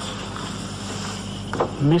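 Steady hiss over a low hum, with a man starting to speak near the end.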